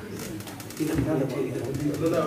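A man's voice over a PA microphone, low and drawn out from a little under a second in, with softer room sound before it.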